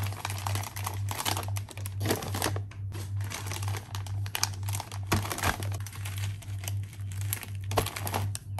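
Crinkling and rustling of foil-lined snack bags and plastic-wrapped cookie and biscuit packs being handled and set down, in repeated short bursts, over a low, evenly pulsing hum.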